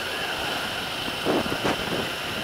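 Motorcycle riding noise picked up by a helmet-mounted camera: steady wind rush over the microphone with the engine and road noise underneath. A couple of brief short sounds come a little past halfway.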